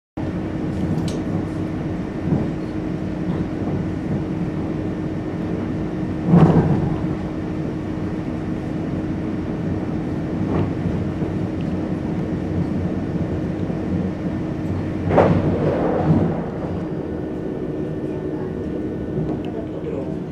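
Steady rumble and low hum inside a regional passenger train carriage, with a few knocks standing out, the loudest about six seconds in and another about fifteen seconds in.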